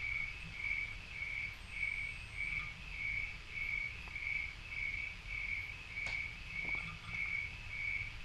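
A cricket chirping steadily, a short, even chirp repeating a little under twice a second over a faint low hum.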